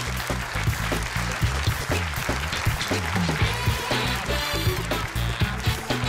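Live house band of keyboards, guitar, bass guitar and drums playing the closing tune, with a repeating bass line and a regular drumbeat, over audience applause.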